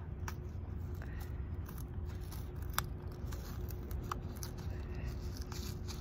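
A small cardboard toy blind box being worked open by hand: a few scattered light clicks and scrapes of card over a steady low background rumble.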